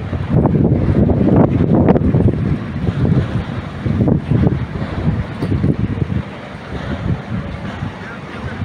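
Wind buffeting the microphone in irregular gusts, a loud low rumble that eases off in the last couple of seconds.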